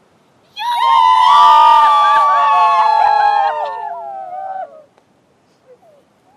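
Several girls' and women's voices shouting together in long, high calls that slide down in pitch, lasting about four seconds: a group whoop as the Smrtka, the straw Death effigy, is thrown into the stream.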